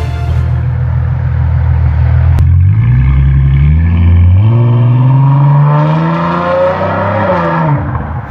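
Ford Mustang V8 pulling away hard. The engine note rises in pitch through two gears, then drops away and fades as the car drives off.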